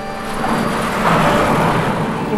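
A loud, toneless rushing noise that swells up about half a second in and holds, with faint music underneath.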